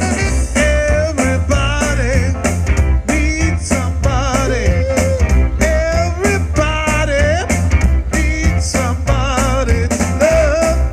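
Saxophone playing a wavering melody with vibrato over a loud, bass-heavy backing with a steady beat, in a blues/ska style.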